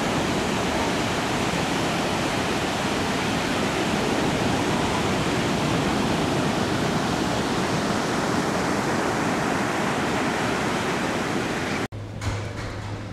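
Surf breaking and washing up a sandy beach: a steady, even rush of waves close by, cutting off abruptly at the very end.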